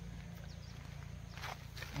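Quiet outdoor background with a steady low hum and a couple of faint soft rustles near the end.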